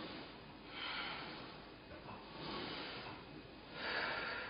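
A woman breathing out audibly in a steady rhythm, about three breaths, one every second and a half, in time with repetitions of an arm exercise on a Pilates reformer.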